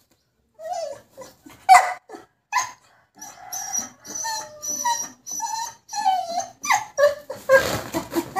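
A dog whining and yipping in short pitched calls, a few scattered at first, then a steady run of about two calls a second.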